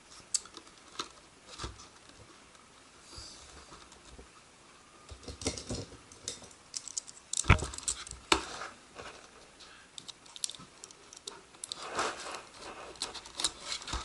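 A cardboard retail box being handled and pried open by hand: scattered clicks, crackles and scrapes of flexing card and packaging, sparse at first and busier in the second half.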